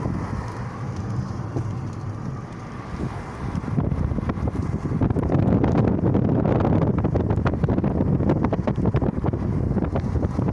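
Wind rushing and buffeting on the microphone from a moving vehicle, over low road and engine rumble; it gets louder about four to five seconds in.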